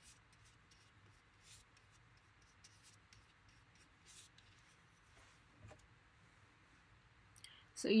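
Faint, scattered soft scratching strokes of a flat paintbrush spreading Mod Podge onto a plastic ornament.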